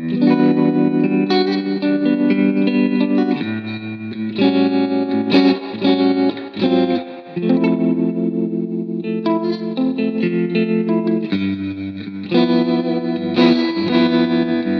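Fender electric guitar played through the UAFX Dream '65 Reverb Amp pedal, an amp simulator modelled on a '65 blackface amp, recorded direct with no amplifier. It plays a sequence of sustained chords, each ringing for a second or two before the next.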